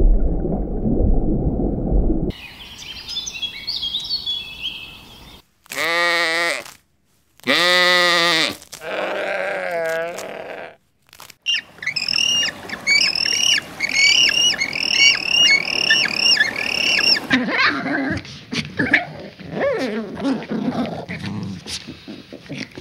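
A series of different animal calls: a low rumbling noise at first, then high twittering, two long quavering calls about 6 and 8 seconds in, and a run of short repeated chirps, about two a second, from about 12 to 17 seconds, followed by scattered calls.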